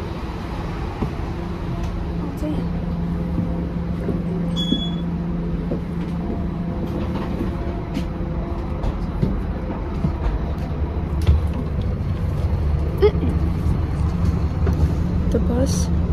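Inside a moving city bus: the bus engine and running gear give a steady low rumble and hum, with scattered small knocks and rattles. A short high electronic beep sounds once, about five seconds in.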